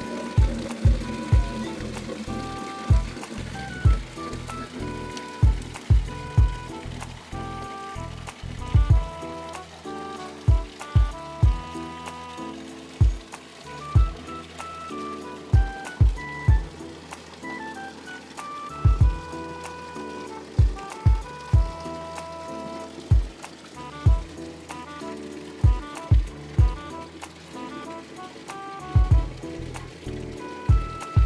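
Background film music: a melody of held keyboard-like notes over a deep, irregular thudding beat.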